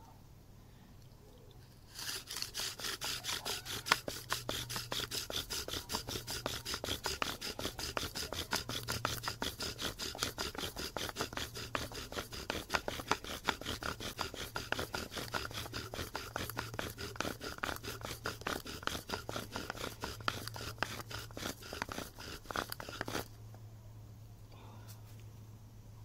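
Bow drill at work: a poplar spindle spun by a bow in a pine and willow hearth board, making a fast, rhythmic scraping squeak with each stroke of the bow while the board smokes. It starts about two seconds in and stops abruptly a few seconds before the end.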